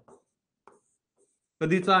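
Marker pen writing on a whiteboard: a few faint, short strokes.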